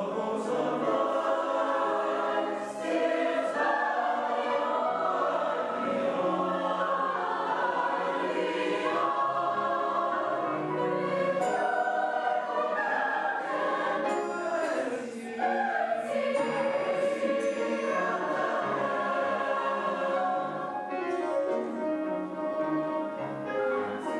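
Mixed choir of men's and women's voices singing a sustained passage in several parts, with a brief softening about fifteen seconds in.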